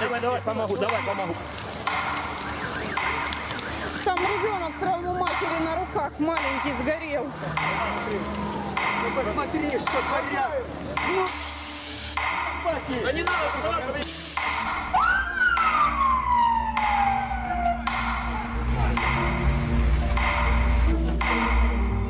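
Upset women's voices and crying in the street, cut in short pieces. Then comes a single long whistle that leaps up and slides slowly down in pitch, followed by a deep low rumble.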